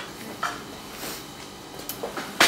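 Quiet room tone with a few faint, brief knocks and clicks.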